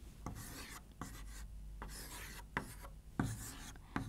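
Chalk writing on a chalkboard: faint scratching strokes with a few light taps of the chalk against the board as small circles are drawn.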